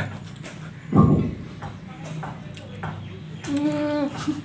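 Mouth sounds of people eating noodles with chopsticks: slurping and clicky lip and tongue sounds, with a short loud burst about a second in. A hummed 'mmm' is held near the end.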